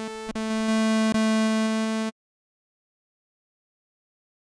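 Surge software synthesizer's Classic sawtooth oscillator holding one steady note, its Pulse setting turned up to give a double sawtooth. Two short clicks break in, and the note cuts off suddenly about two seconds in.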